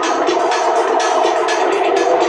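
Electronic dance music from a DJ set, tech house with a steady beat.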